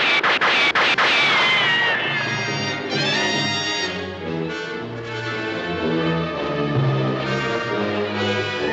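A few gunshots in quick succession, with a bullet striking rock and a falling ricochet whine, followed by an orchestral film score.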